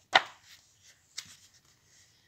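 Paper pages of a printed handout being handled and turned: one sharp rustle just after the start, then a few fainter, brief paper sounds.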